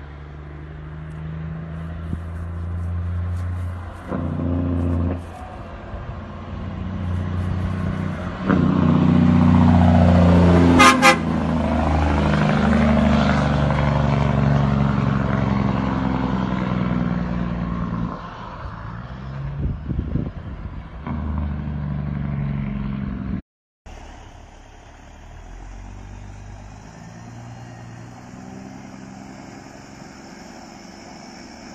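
Diesel engine of a torton (tandem-axle straight) truck getting louder as it approaches, peaking as it passes with a short horn blast about eleven seconds in, then fading away. After a sudden cut, another torton truck is heard running more quietly.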